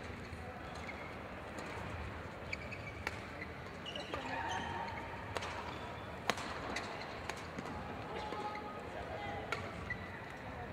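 Badminton play: a few sharp, irregular knocks of rackets striking the shuttlecock and brief shoe squeaks on the court mat, over the murmur of indistinct voices in the hall.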